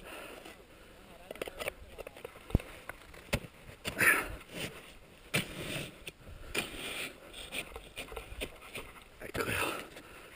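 An ice axe being planted into snow and crampons scraping on rock, giving scattered knocks and scrapes, over the climber's breathing as he works up mixed ground.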